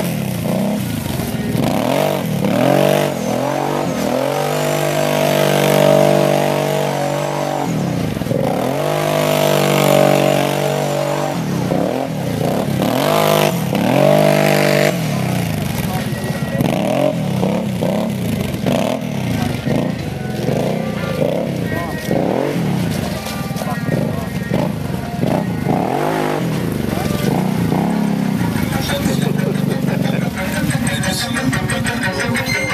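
ATV engine revving as it is ridden across mud, pitch rising and falling over and over with the throttle, held at high revs for several seconds near the middle before easing off and picking up again.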